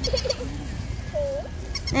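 Battery-powered toy dog making its electronic sounds: short whining yips, one of them dipping and rising a little past a second in, over a rapid high ticking of about six ticks a second that pauses midway.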